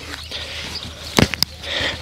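A sharp click about a second in, followed by a couple of lighter ticks, over faint outdoor background noise.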